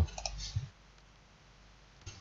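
A few quick computer mouse clicks in the first half second or so, then near-quiet room tone.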